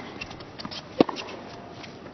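A tennis ball struck by a racket once, a sharp pop about a second in, over the faint hush of the stadium crowd.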